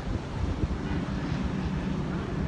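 Wind buffeting the microphone in a steady low rumble, over the wash of a fast-flowing river.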